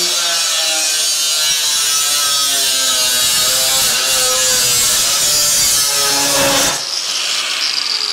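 Angle grinder with a 125 mm disc cutting through a steel modular metal roof tile sheet: a loud, harsh grinding with a wavering motor whine, which stops suddenly near the end as the cut finishes.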